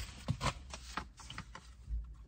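Fabric and parcel packaging handled by hand: light rustles and a few small, irregular clicks and taps as a garment is pulled out and turned over.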